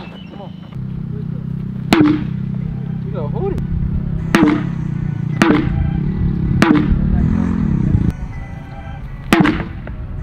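Background music with a steady low beat and some vocals, cut through by five sharp hits, the last three about a second apart: a wooden bat striking a rubber tire held upright in a bat-and-tire drill.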